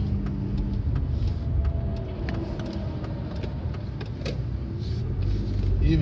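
Low rumble of a car's engine and tyres heard from inside the cabin, growing louder near the end as the car pulls out onto the road.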